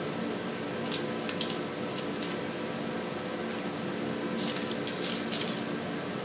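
Faint crinkling of baking parchment as soft dough balls are set into a parchment-lined pan: a few short rustles about a second in and a cluster more near the end, over a steady low hum.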